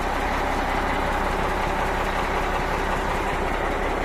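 Heavy diesel truck engine idling steadily.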